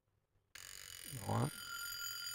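Vintage Japanese alarm clock's alarm ringing, starting suddenly about half a second in and going on steadily.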